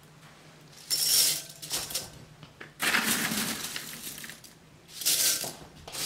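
Brittle dried green and yellow beans rustling and clattering as they are scooped up by hand and dropped, three handfuls in turn.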